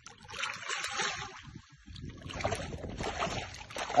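Water splashing and sloshing around a landing net held at the surface with a pike in it, in two stretches with a short lull between.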